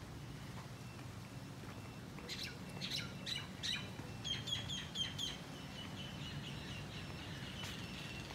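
Birds chirping: a cluster of sharp high chirps about two seconds in, then a quick run of repeated high notes near the middle, over a low steady background hum.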